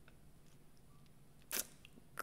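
Near silence with faint room tone, broken about one and a half seconds in by a brief, sharp mouth sound from the speaker, such as a breath drawn in before speaking.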